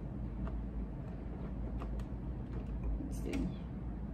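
A few faint clicks and handling sounds as fabric is set under a serger's presser foot, over a steady low hum; the serger is not stitching.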